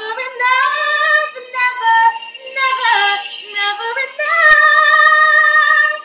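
A woman singing a wordless run of sliding, ornamented notes, then holding one long loud note from about four seconds in that cuts off sharply at the end.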